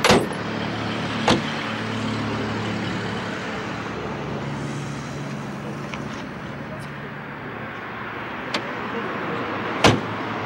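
Steady low running of a car engine, the '85 Oldsmobile's 3.8-litre GM V6. Over it come a few sharp thumps: the loudest right at the start as the raised hood is shut, another a second later, and two more near the end.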